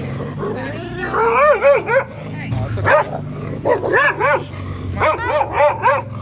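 A small dog yapping and barking in three quick, rapid-fire bursts of high, wavering calls. It is still not settled on the leash despite its training.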